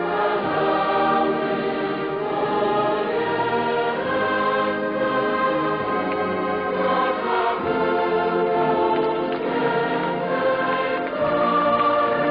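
A choir singing a sacred hymn in long, held notes.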